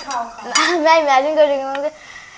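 A girl singing a long held note, with a spoon clinking on a steel plate.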